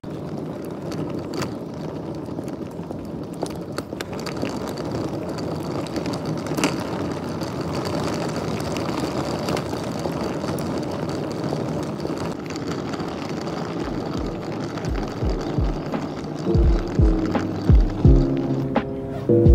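Outdoor street ambience heard while walking: a steady rush of noise with scattered light clicks. Near the end, background music with a beat comes in over it.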